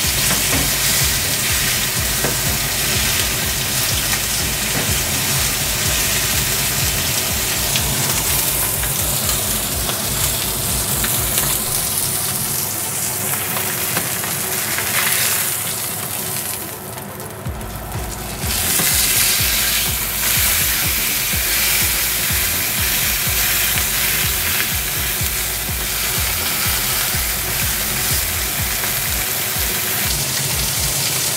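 Sirloin steak searing and sizzling in a hot ridged grill pan. About sixteen seconds in the sizzle dies down briefly as the steak is lifted with tongs, then comes back louder when it is laid down on a fresh side.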